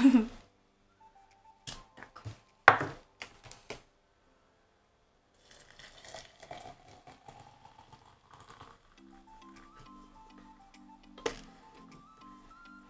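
A metal spoon clinks and scrapes while loose-leaf tea is scooped into a glass French press, then water is poured into the press from a kettle, its pitch rising as the press fills. Soft background music comes in near the end.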